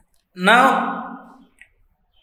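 Only speech: one drawn-out spoken word, "now", falling in pitch and trailing off.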